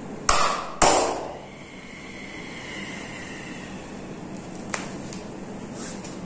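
Two loud slaps of a hand on a bare back, about half a second apart, as percussive massage strokes.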